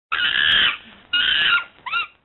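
Primate calls played over a logo ident: two long calls of about half a second each, then two short gliding calls near the end.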